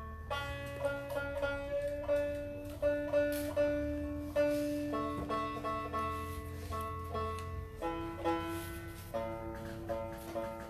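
An acoustic guitar and a banjo-like plucked string instrument play a folk tune together: quick picked notes ring over a held low note that shifts pitch twice.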